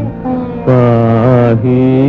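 Carnatic-style devotional Telugu film song: after a brief break, one long, steady held note sounds over a continuous low drone, and a new note begins near the end.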